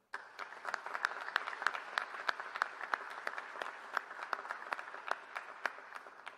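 Audience applause that starts suddenly, with one close pair of hands clapping sharply about three times a second above the rest. It dies away near the end.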